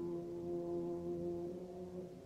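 A brass instrument from the symphony band holds one soft note for about a second and a half, then fades out. This comes as a loud band passage winds down.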